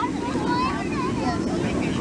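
Hot tub jets churning the water, a steady rushing and bubbling, with voices over it.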